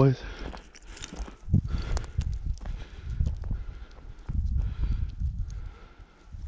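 Footsteps of someone walking slowly and unevenly: a string of irregular low thumps with light crunches and ticks.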